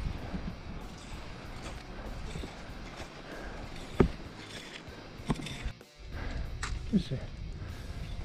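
Outdoor movement noise of ski touring on hard-packed snow: an even rustling hiss with a few sharp clicks, the loudest about four seconds in, with faint music underneath.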